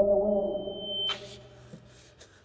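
Film-score drone: a held chord of steady electronic tones slowly fading out, with a thin high ringing tone over it that cuts off just after a second in, where a short rush of noise follows.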